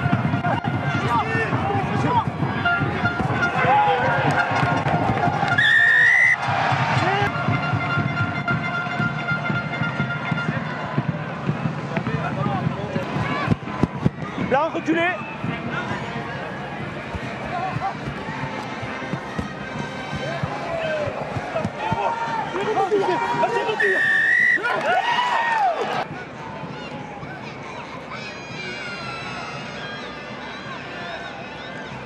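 Rugby stadium crowd noise with music played in the stands and raised voices shouting and cheering, with a couple of short shrill rising tones. The din drops to a lower level a few seconds before the end.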